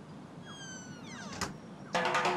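Faint background hiss with a few short, high calls gliding up and down in pitch, and one sharp click about one and a half seconds in.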